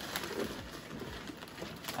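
Loose, woody potting soil pouring from a bag into a plastic tub, a soft steady hiss with the bag rustling.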